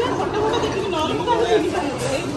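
Several people talking over one another in a room: overlapping conversational chatter.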